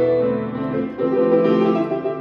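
Solo grand piano playing held chords, with a new chord struck about a second in.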